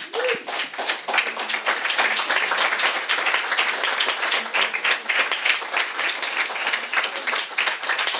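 Audience applauding: many people clapping together in a steady round that builds up over the first second or so.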